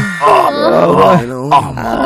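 A man groaning several times in a drawn-out, wavering voice.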